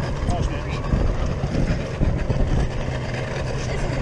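Outboard motor idling steadily, a low hum, as two boat hulls are held together, with a couple of thuds about one and two seconds in.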